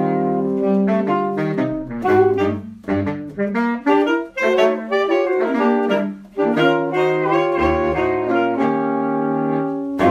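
Background music: an instrumental jazz tune with a saxophone-like lead playing melodic phrases over sustained chords.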